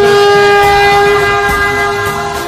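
A loud, steady horn-like tone, one pitch held for about two and a half seconds over background music.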